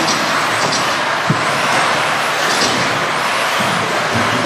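Electric 2WD modified RC buggies running laps on an indoor track: a steady, dense rush of motor and tyre noise, with short high motor whines a few times as cars pass close by.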